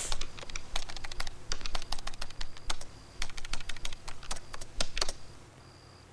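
Typing on a laptop keyboard: quick, irregular keystrokes that stop about five seconds in.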